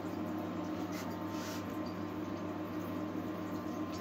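Steady low hum with a faint even hiss from a stainless pot still heated on an induction hob, its black-currant mash boiling inside.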